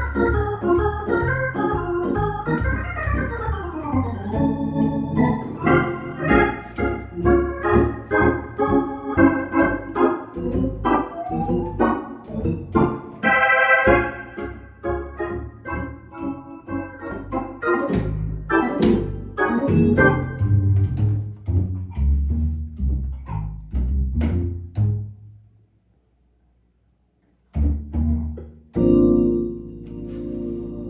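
Hammond organ played solo: busy chords and runs over a low bass line. The playing stops about 25 seconds in, leaving about two seconds of silence, then a short chord and a held chord near the end.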